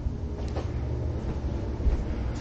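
Uneven low rumbling handling noise from a 360 camera on a selfie stick as it is carried across a room, over a steady low hum, with a faint click about half a second in.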